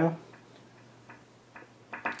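A few faint, short ticks from the iMac's volume-change feedback sound in the second half. The ticks follow a finger sliding along the keyboard's touch-sensitive volume strip as it changes the volume step by step.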